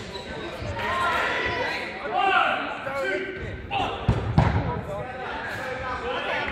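Players' voices calling across a large, echoing sports hall, with a ball bouncing on the wooden floor, loudest as two sharp thuds about four seconds in.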